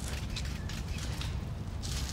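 Footsteps and shuffling on brick paving, irregular short clicks over a steady low rumble.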